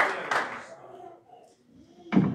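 A congregation's applause dying away within the first second, then a hushed room.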